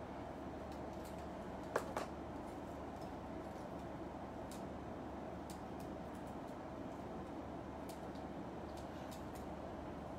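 Steady low room noise with faint clicks from the small parts of a collectible robot figure being handled and fitted together. Two short clicks come about two seconds in, and a few fainter ticks follow later.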